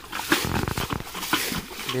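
Muddy water splashing and sloshing as it is scooped from a shallow ditch by bucket and flung out, bailing the ditch to get at the fish, with a short vocal sound from one of the people working.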